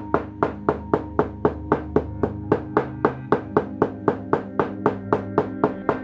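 Hammer striking a stitching chisel to punch stitch holes through leather, a steady run of sharp taps about three to four a second, over background music with sustained tones.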